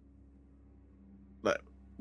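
Near silence with a faint steady hum, broken about one and a half seconds in by a single very short vocal sound from the man at the microphone.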